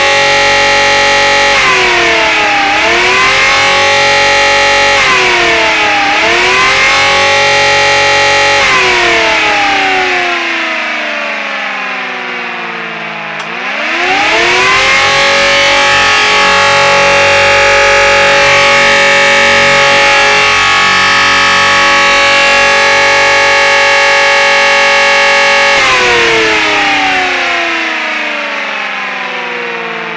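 Home-built nine-to-twelve-port dual-tone axial siren, driven by an electric motor, sounding loudly. It first wavers up and down about every two seconds, as in an attack signal, then winds down. It runs back up to a steady two-tone chord, with both tones clear, and winds down again near the end.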